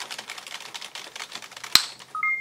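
Rapid typing on a computer keyboard, a fast run of key clicks, ending with one much louder, sharper keystroke near the end.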